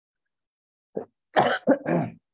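A man coughing: a short run of two or three sharp coughs starting about a second in, after a brief silence.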